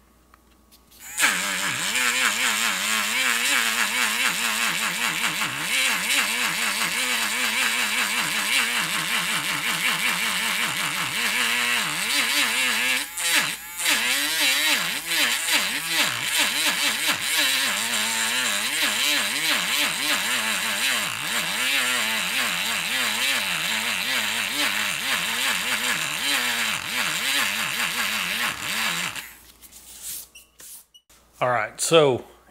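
Helix electric eraser running against airbrushed paper, erasing a shadow; its small motor whines with a pitch that wavers as it is pressed and moved. It starts about a second in, breaks off briefly midway, and stops just before the end.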